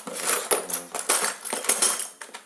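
Steel spanners, bolts and loose hardware clinking and rattling against each other as a hand rummages through a plastic toolbox, a rapid run of sharp metallic clinks.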